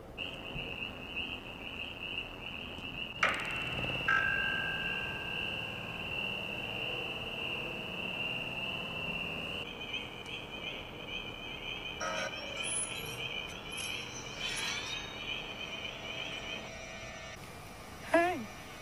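A steady high-pitched whine with a slight warble. About ten seconds in it becomes two close tones, and it stops shortly before the end. A sharp click comes about three seconds in and another a second later.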